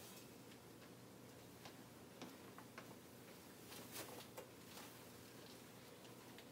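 Near silence: faint room tone with a few soft, scattered clicks and rustles, a cluster of them about four seconds in, from a disposable isolation gown being put on and tied.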